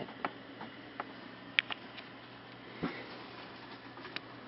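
Scattered light clicks and taps of a plastic stylus drawing on a plastic light-up drawing board, the sharpest about a second and a half in and a duller knock near three seconds, over a faint steady hum.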